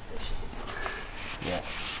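Cloth rag rubbing and wiping across wet cardboard, mopping up spilled petrol: a steady scratchy rubbing.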